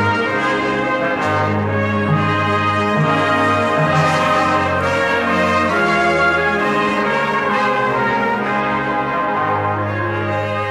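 Orchestra playing an opera score, with brass prominent in long held chords over low bass notes.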